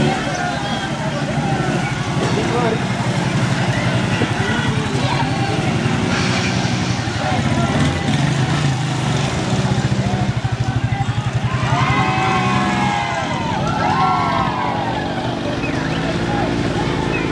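A motor vehicle engine running steadily at low revs, with people's voices over it. Louder calling voices come in the last few seconds.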